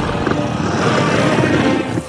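Dark horror-film score with a dense low rumbling drone. It drops away sharply at the end.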